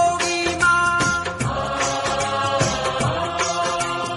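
Punjabi song playing, with a long held note through the middle over a steady beat.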